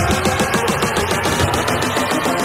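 Psytrance electronic dance music. Right at the start the kick drum and bass drop out, leaving a fast pulsing synth line.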